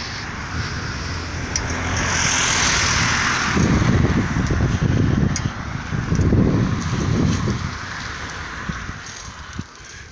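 Wind buffeting the microphone of a handheld camera moving along a street, in gusty low rumbles that are strongest in the middle. A rush of noise swells and falls away about two to three seconds in, and the sound dies down near the end.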